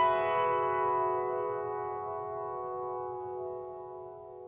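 Electric piano intro music. The last note of a short rising run lands right at the start, then the chord is left ringing and slowly fades.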